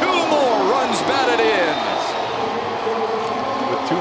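A broadcast commentator's voice over the steady background noise of a ballpark crowd.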